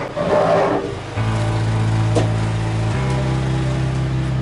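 Background music with held chords that change every couple of seconds, and a brief louder rustle near the start.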